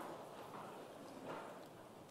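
Faint shuffling, rustling and light knocks of a congregation sitting down in church pews, dying away.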